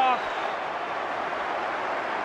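Football stadium crowd noise: a steady din of many voices with no single sound standing out.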